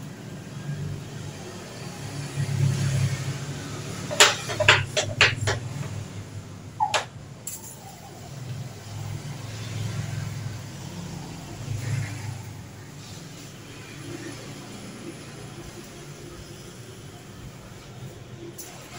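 A hand-pump pressure spray bottle misting plants: a quick run of four short sprays about four seconds in, and one more a little later, over a low steady background rumble.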